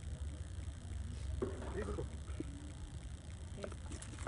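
Faint voices in the distance over a steady low rumble.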